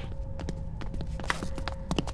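Small fragments of a shattered screen falling and landing in a scattering of light, irregularly spaced clicks and taps, over a faint steady hum.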